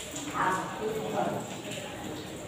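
Chalk tapping and scraping on a blackboard as words are written by hand, with voices in the room in the background.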